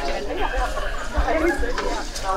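Several people talking at once, overlapping chatter.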